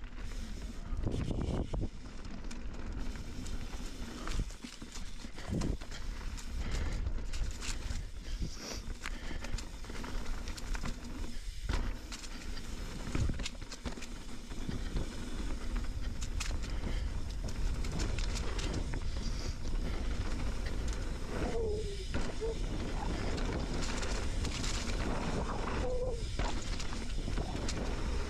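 Mountain bike riding down a dirt singletrack: tyres rolling over dirt and leaves, with the bike rattling and clicking over bumps and wind buffeting the chin-mounted camera's microphone.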